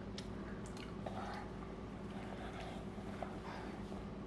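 Faint chewing and scattered small clicks of someone eating and handling a piece of a chocolate piñata shell, over a steady low hum.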